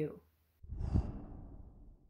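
An edited-in transition sound effect: a sudden swell of rushing noise with a deep rumble. It peaks about a second in and fades away as the title card appears.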